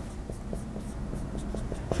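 Marker writing on a whiteboard: a series of short, light strokes as letters are written.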